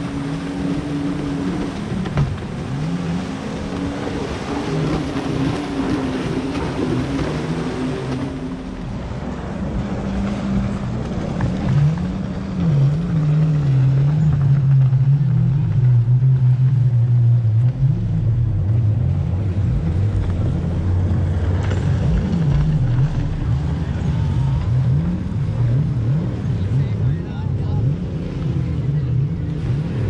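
Racing jet skis' engines droning and wavering in pitch offshore, over wind and surf. The sound shifts about eight seconds in and grows louder and lower near the middle.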